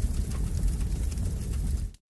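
A logo sting sound effect: a low rumbling swell, mostly deep, that holds steady and cuts off just before the end.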